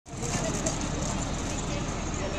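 A truck's engine running steadily under the raised hydraulic crane, with people's voices talking in the background.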